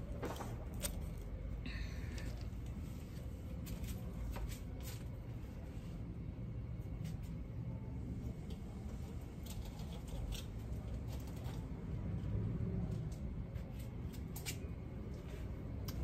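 Steady low background rumble, with scattered small clicks and rustles of handling.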